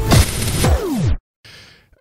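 A whooshing transition sound effect with a falling pitch, stopping a little over a second in, followed by a moment of faint noise.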